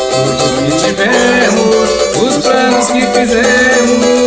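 Cavaquinho strummed in a steady, even pagode rhythm, chording through a progression in G.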